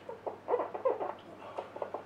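Marker squeaking on a whiteboard in a run of short, irregular strokes as a formula is written.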